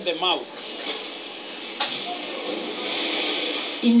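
Sound of a documentary heard through a television speaker: a brief snatch of a voice at the start, a sharp click about two seconds in, then a steady hiss before a man's voice starts again at the end.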